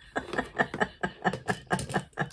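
A woman laughing: a quick run of short laughs, several a second, that stops near the end.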